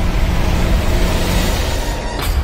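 Cinematic whoosh with a deep rumble underneath as a flipped coin spins through the air, swelling early and easing off near the end.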